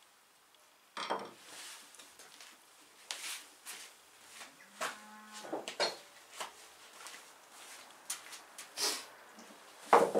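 Workshop handling noises: tools and pieces of wood knocked and set down on a wooden workbench, with footsteps, after about a second of near quiet. A short drawn-out tone sounds about five seconds in, and a sharp knock, the loudest sound, comes just before the end as a mallet is set down on the bench.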